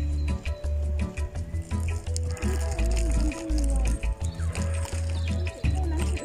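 Gusty wind rumbling on a phone microphone, cutting in and out, over faint music with held notes.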